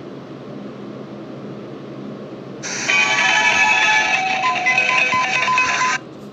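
Electronic tune from a View-Master Light & Sound projector toy, heard through a phone speaker. It starts loud about two and a half seconds in and cuts off suddenly at the end.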